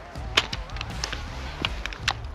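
Rifle and bipod handling noise as a prone shooter gets up to kneel: a few sharp clicks and knocks over clothing and grass rustle.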